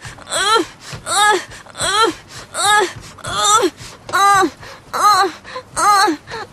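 A woman laughing hard in a steady run of short, high-pitched, wheezy bursts, about two a second, each rising and falling in pitch.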